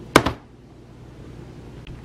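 Plastic OxiClean tub set down on a hard countertop with a sharp double knock about a quarter second in, followed by a faint click near the end.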